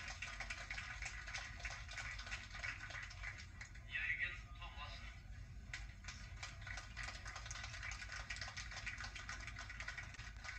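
Faint, muffled speech from an old videotape of a man talking at a podium microphone, played back over a video call, with a brief louder moment about four seconds in.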